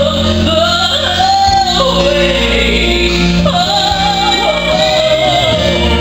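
A gospel vocal trio of two women and a man singing live through microphones over a musical accompaniment, with a woman's voice leading.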